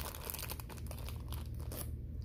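Thin plastic film wrapper on a packaged cookie crinkling as it is handled and pulled open close to the microphone: a dense, continuous crackle of small crinkles.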